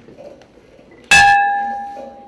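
A hanging memorial bell, rung by pulling its rope, is struck once by its clapper about a second in. It gives a clear clang that rings on and slowly fades. The bell is tolled for the dead.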